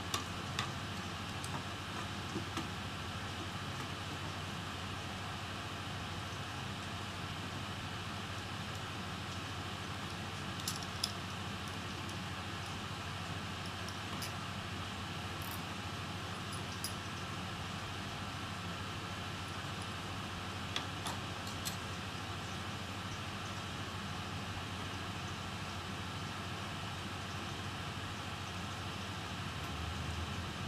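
Steady background hiss with scattered light metallic clicks and taps of small hand tools working on a laptop motherboard, a few near the start, a pair about eleven seconds in and a cluster about twenty-one seconds in.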